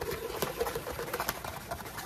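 A few light, sharp clicks and taps of small items being handled, over a faint steady room hum.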